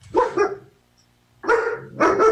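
A dog barking twice, two short loud barks about a second apart.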